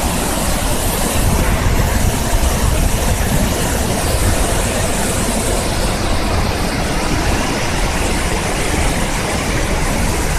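Berdan River waterfall and rapids rushing, a loud, steady wash of white-water noise with a deep rumble underneath.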